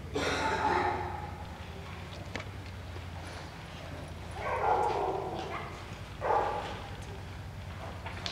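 Nova Scotia duck tolling retriever vocalizing in excitement: three loud outbursts, each about a second long or less, near the start, about halfway and again shortly after, over a steady low hum.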